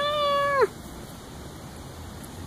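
Domestic cat meowing once: a short call of just over half a second that holds level and drops in pitch at the end.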